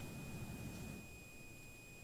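Faint room tone over a microphone feed, with a thin steady high-pitched tone. The level sinks a little in the second half.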